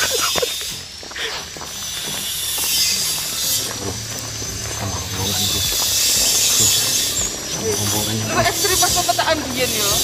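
Indistinct voices of people talking, over a steady hiss that swells twice.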